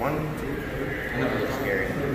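Men's voices: a man says "one, two", followed by indistinct talk, with one high, wavering vocal sound among them.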